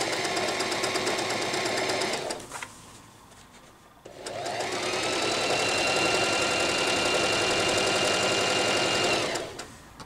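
Electric sewing machine stitching a seam in two runs. It runs for about two seconds and stops, then starts again after a short pause with a rising whine as it gets up to speed, runs steadily and stops just before the end.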